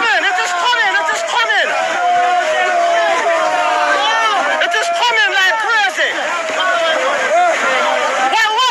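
Several people's voices talking and exclaiming loudly over one another, an excited group of onlookers.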